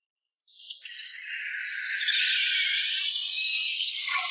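Car tyres screeching under emergency braking. A sudden high-pitched screech starts about half a second in, grows louder and holds steady.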